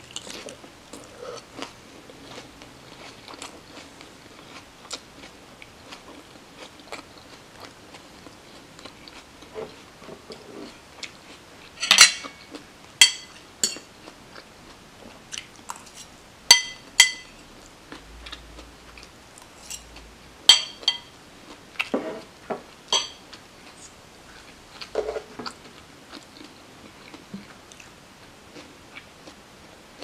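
Close-up chewing of a crunchy iceberg-lettuce chicken wrap, with moist mouth sounds. Midway, a metal fork clinks sharply against a dish about six times, the loudest sounds here.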